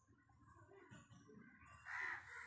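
Near silence, with a louder animal call starting near the end.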